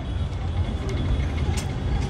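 Low, steady rumble of street traffic, with a few faint clicks.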